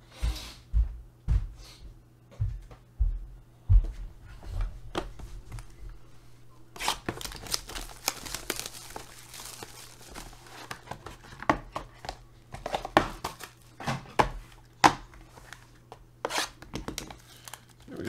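Plastic shrink-wrap being torn and crinkled off a trading-card box, a dense crackling rustle with sharp snaps, after a few dull thumps of the box being handled in the first few seconds.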